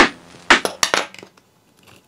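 Sharp plastic clicks and knocks of a 3D-printed robot chassis and its wedges being handled and set on a tabletop: one knock at the start, then a quick cluster of several clicks about half a second to a second in.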